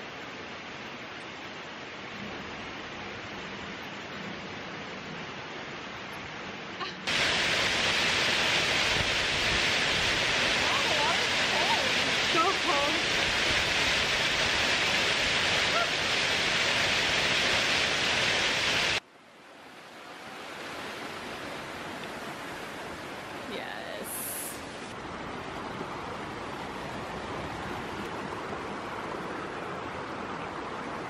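Steady rush of a forest creek or river. It comes in three sections: moderate at first, much louder from about seven seconds in, then cut suddenly to a softer level near the two-thirds mark.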